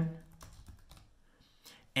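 Faint, scattered keystrokes on a computer keyboard, typing a short label.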